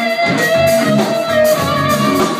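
Live band playing an instrumental AOR passage led by electric guitar, with long held notes.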